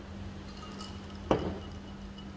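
Low steady rumble of wind with a steady hum under it, and one sharp click a little over a second in.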